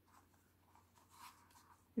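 Faint rubbing and handling of a small baby shoe in the hands: a few soft scrapes of leather and laces against fingers.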